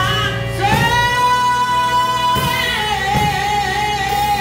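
A woman singing a gospel song into a microphone with live drum and instrument backing, holding one long note and then a second, lower one.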